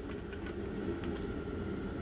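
A steady low hum of background noise with no distinct events.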